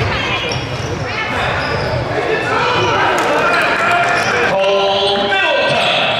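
Live basketball game sound in a large gym: a basketball dribbling on a hardwood floor and sneakers squeaking, under players' and spectators' voices.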